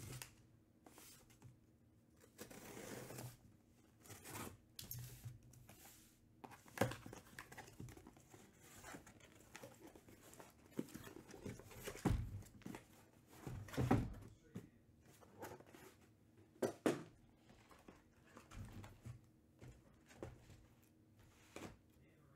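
Packing tape on a cardboard shipping case being slit and torn open, with cardboard rustling as the case is handled. Scattered knocks follow, the sharpest about halfway through and near three-quarters in, as small cardboard hobby boxes are set down and stacked.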